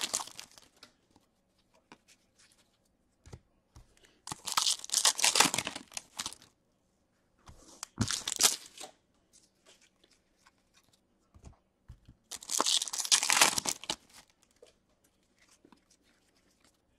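Foil wrappers of Upper Deck hockey card packs being torn open and crinkled by hand, in three separate bursts a few seconds apart, with faint clicks of cards being handled in between.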